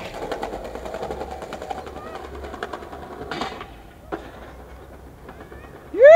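Skateboard wheels rolling over paving stones, clicking steadily over the joints and slowly fading. Two sharper knocks come a little past the middle.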